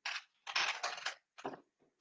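A crumpled paper envelope being handled, crinkling in a few short bursts.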